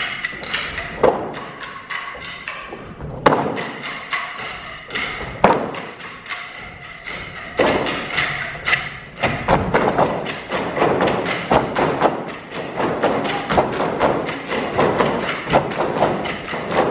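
Wooden sticks of a Hungarian men's stick dance clacking together, with boot stamps on the stage, over live folk band music. The strikes come singly at first, a few seconds apart, then turn into a fast, dense run from about halfway through.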